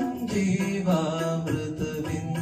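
A young man singing into a handheld microphone, drawing out a long gliding, ornamented phrase over a recorded backing track with a light steady beat.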